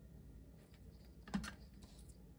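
Faint tapping and rustling of paper pieces being pressed down onto cardstock by hand, with one sharper click about a second and a half in.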